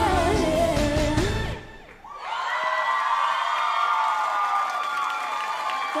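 Live pop song, women's group vocals over a backing track with a heavy beat, ending abruptly about a second and a half in. A studio audience then cheers and whoops.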